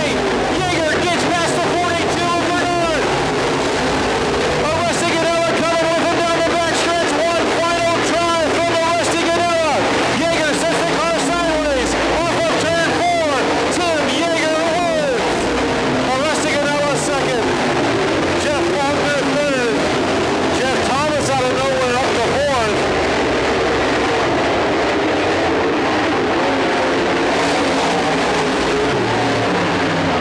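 Dirt modified race cars' V8 engines at full throttle as the field laps the dirt oval, each pitch rising and then dropping sharply as a car passes close by. The engine noise thins out in the last several seconds as the cars slow at the finish.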